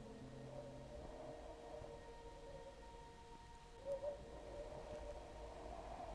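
Faint ambient drone from a film score. A gong-like tone dies away in the first second, leaving thin steady hum tones, with a soft swell a little before four seconds in.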